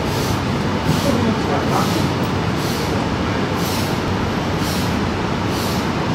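Steady room noise, a low rumble with hiss, swelling softly about once a second, with faint voices underneath.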